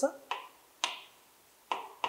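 Chalk writing on a blackboard: three sharp taps of the chalk striking the board, each followed by a short scrape, spread unevenly over the two seconds.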